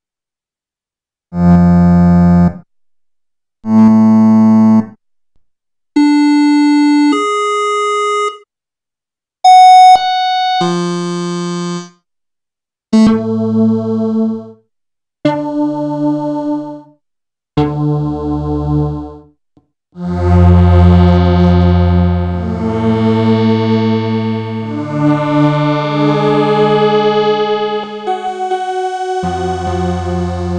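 Pad 1 software synthesizer (Neko Synthesizers) playing through its presets. Separate held chords, each about a second long with silent gaps between, give way after about 20 seconds to a continuous run of overlapping synth notes.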